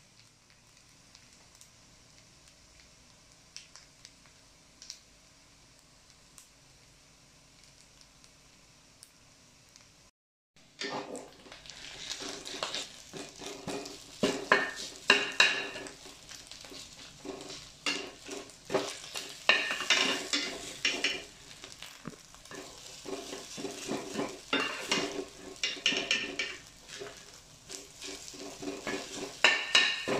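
Nearly quiet for the first ten seconds apart from a few faint clicks. Then a metal spatula scrapes and clatters against a stainless steel wok while stir-frying rice, in loud, irregular strokes that keep up to the end.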